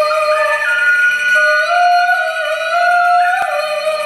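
Live ensemble music: long held pitched notes that step slowly up and down over a steady lower held tone, with a single faint knock near the end.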